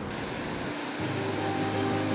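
Steady rushing of river water over rocks, with background music of long held notes fading in about a second in.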